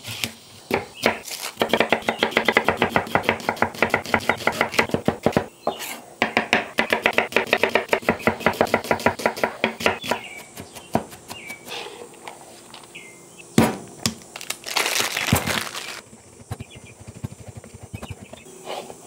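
Chef's knife dicing an onion on a wooden cutting board: two runs of rapid, even chopping strikes with a short break between them. Then come a few scattered knocks and, later on, a brief rasping scrape.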